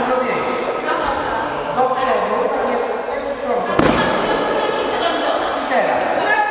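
Indistinct voices talking in a large sports hall, with one sharp thud a little under four seconds in.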